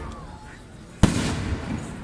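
A single loud, sharp bang about a second in, ringing briefly as it dies away, over crowd noise.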